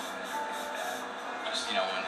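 Indistinct talking over background music, played back through a television speaker and sounding thin, with no low end.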